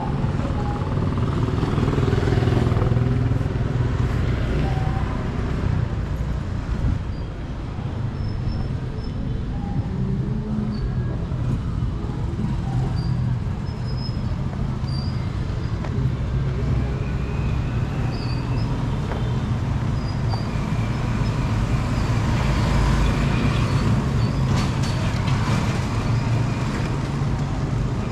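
Street traffic of motorcycles and motorized tricycles running past, louder about two seconds in and again near the end. Short high chirps are scattered through it.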